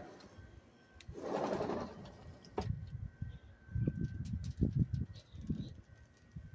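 Low, repeated cooing of a dove, in short clusters of soft hoots, after a brief rustling noise about a second in.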